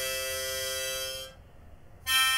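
Harmonica held on one long chord that stops a little past a second in, leaving only a low hum until the next chord begins at the very end.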